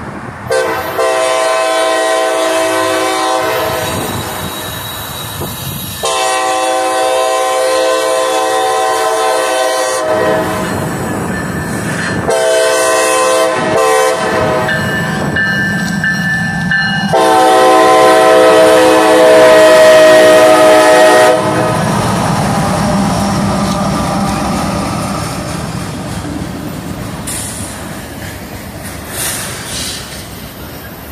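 Air horn of a CSX freight train's lead GE ET44AH locomotive, sounded in a series of blasts: two long ones, shorter ones after them, and a final long blast that is the loudest, as the locomotives pass close by. After the horn stops the engines and the rolling cars rumble and rattle past.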